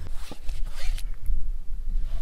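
Low rumble of wind buffeting the microphone, with a brief rasping rustle and a light tick in the first second.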